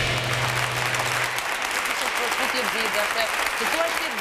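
Applause: many people clapping steadily, with faint voices under it. A low steady tone left over from the music before stops about a second and a half in.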